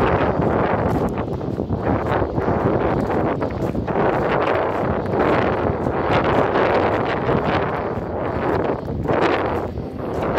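Wind buffeting the microphone in gusts: a loud rushing noise that swells and eases every few seconds.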